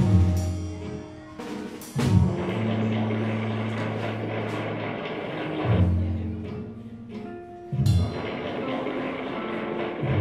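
Live free-improvised music from a trio of Nord keyboard, electric guitar with effects, and drum kit. Heavy sustained low notes come in with a strong attack about every two seconds, over a dense wash of cymbals and drums.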